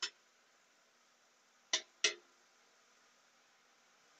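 Metal spatulas striking a flat-top griddle while turning shrimp: one short clink at the start, then two quick clinks close together near the middle.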